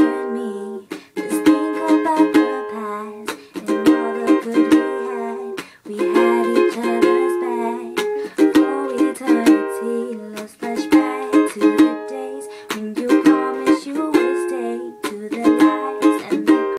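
Ukulele strummed in a steady rhythm, cycling through the song's chords G, D, Em and D, changing chord every couple of seconds.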